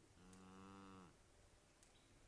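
A bottle calf mooing once, a faint call about a second long that dips slightly in pitch as it ends.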